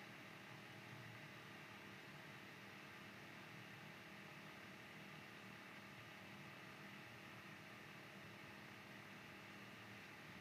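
Near silence: a faint, steady hiss of the recording's background noise.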